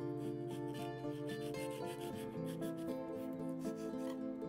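A kitchen knife slicing and scraping along a thick aloe vera leaf on a wooden cutting board, cutting the rind away from the gel in repeated rubbing strokes. Background music with plucked notes plays underneath.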